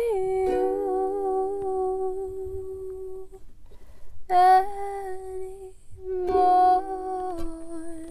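A woman hums a slow wordless melody in long held notes over a soprano ukulele. The first note is held for about three seconds, and after a short gap come two shorter phrases.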